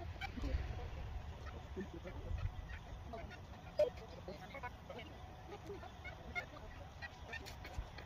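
Faint outdoor ambience: a low rumble of wind on the microphone, with scattered short, faint bird calls.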